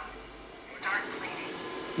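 Xiaomi TruClean W10 Ultra wet-dry vacuum switching on: a brief electronic chirp about a second in, then the suction motor running with a steady hiss and a thin high whine.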